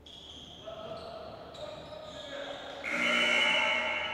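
Live basketball play on a hardwood gym court: ball bounces and high-pitched sneaker squeaks. A louder voice shouts about three seconds in.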